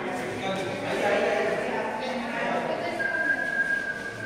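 Indistinct voices of people talking in a large hall. About three seconds in, a steady high whistle-like tone starts and holds without changing pitch.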